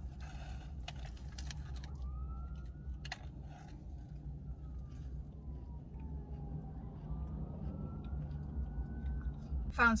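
A distant emergency-vehicle siren wailing slowly up and then down and up again over a steady low rumble. A few short crackles from handling the taco come in the first couple of seconds.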